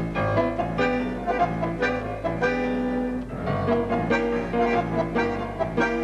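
Tango orchestra playing sustained chords and accented phrases, with bandoneons, bowed strings and piano.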